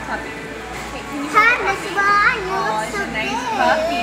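A child's voice making high-pitched, wordless vocal sounds, with other voices around.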